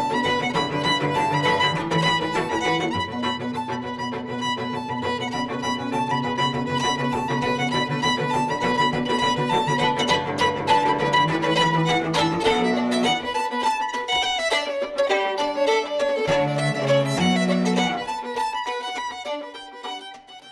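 Fiddle music playing a tune, with lower notes beneath it that drop out about two-thirds of the way through. It fades out near the end.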